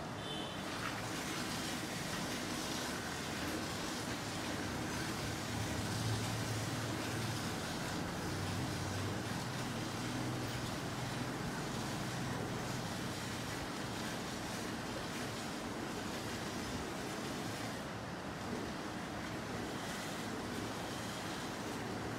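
Water buffalo being hand-milked: streams of milk squirting steadily into a steel bucket, a continuous hiss, with a low hum in the middle stretch.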